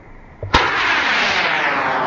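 Diwali bottle rocket going off: a sharp crack about half a second in, then a loud rushing hiss of the rocket launching, its tone sliding steadily downward.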